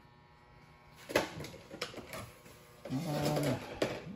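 Handling noises: a faint room hum, then from about a second in several sharp knocks and clicks with clatter between them, the first the loudest. A short low pitched murmur comes near the end.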